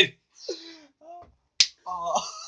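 A single sharp slap of an open hand on a person's face about three-quarters of the way in, after faint voices; a short vocal sound follows right after the smack.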